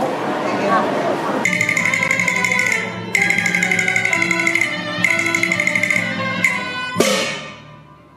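Cantonese opera instrumental ensemble playing a sustained high melody over a fuller accompaniment. It starts suddenly about a second and a half in, after crowd chatter, and breaks off abruptly near the end with a short ringing tail.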